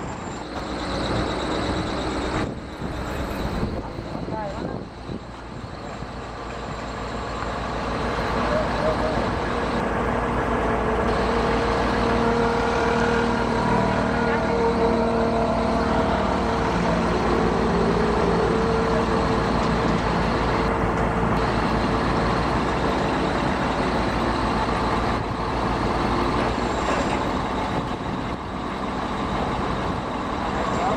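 Heavy construction machinery engines running, an excavator among them. The steady engine noise grows louder over the first ten seconds or so and then holds.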